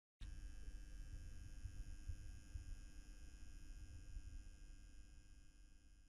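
Faint low hum at the head of the track, fading out shortly before the end.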